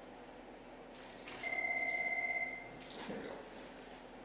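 Office desk telephone ringing once: a warbling electronic ring of about a second, with faint clicks before and after it.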